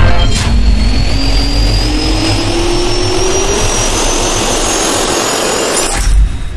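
Jet engine spooling up, as an intro sound effect: a whine rising steadily in pitch over a rushing noise, with a heavy low rumble at the start that fades, cut off suddenly at the end.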